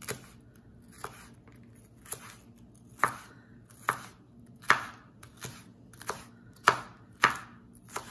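Chef's knife slicing a green bell pepper into strips on a wooden cutting board: about eleven sharp cuts, each ending as the blade strikes the board, about one a second at first and quickening after the middle.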